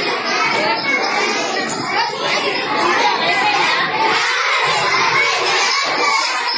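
A crowd of schoolchildren chattering and calling out all at once: a steady din of many overlapping young voices, with no single speaker standing out.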